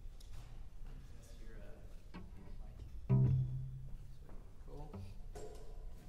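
A single low cello note sounds about three seconds in and dies away over about half a second, with faint voices murmuring around it.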